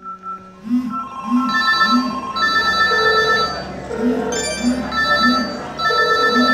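Several mobile phone ringtones and alert tones sounding at once, layered over each other in repeating electronic beeps and short melodic patterns that thicken about a second in.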